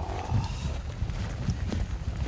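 Wind buffeting the camera microphone as a low, uneven rumble, with faint footsteps on turf.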